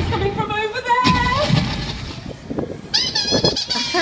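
A brief voice in the first second, then, about three seconds in, Sweep the glove puppet's squeaker voice: a run of very high, sharply rising squeaks.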